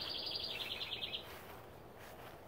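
A songbird singing a rapid, high trill that steps down in pitch and stops a little over a second in, over faint outdoor background noise.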